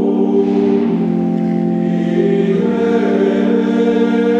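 Gregorian chant sung in unison by a choir: a slow melisma on long held notes, stepping to a new pitch about a second in and again past halfway.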